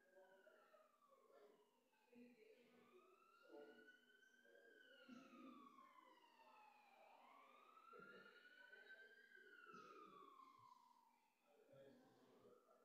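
Faint emergency-vehicle siren in a slow wail, its pitch rising and falling over two to three seconds each way, over a faint murmur of room noise.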